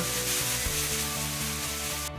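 Plastic cheerleading pom-poms rustling as they are shaken, a dense steady hiss that cuts off suddenly at the end, over soft background music.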